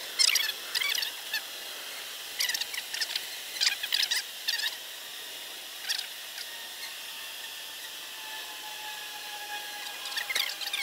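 A bird chirping outdoors in short, high calls, about a dozen of them, bunched in the first six seconds. A faint steady hiss lies under them.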